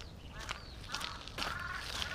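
Footsteps on a wet dirt path, with a faint, drawn-out animal call starting about a second and a half in.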